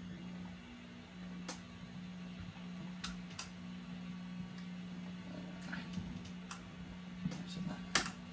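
Low steady hum from an idling guitar amp with nothing being played, with a few faint clicks as the effects pedal's knobs are handled.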